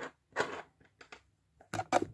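Faint clicks and rustles of a crochet hook and cotton yarn being worked through a slip stitch. A short vocal sound comes near the end.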